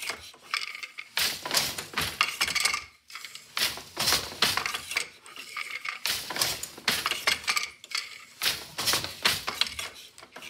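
Wooden floor loom being woven in plain weave (tabby) at a steady rhythm: the shuttle is thrown through the shed, the beater knocks the weft into place, and the treadled shafts and heddles clack and clink. The clatter comes in clusters about every two and a half seconds, one for each pick.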